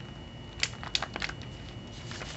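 A deck of oracle cards being handled: a quick run of sharp clicks and snaps about half a second in, then a shorter one near the end.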